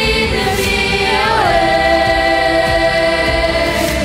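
Amplified choir of children and young people singing, sliding up into one long held note about a second and a half in.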